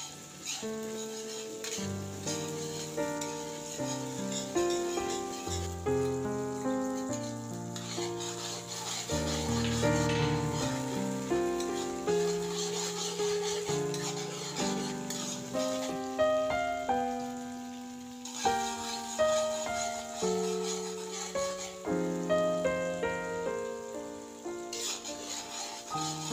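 Instrumental background music, a steady run of short melodic notes, over the faint sizzle of minced garlic frying in oil as a spatula stirs it.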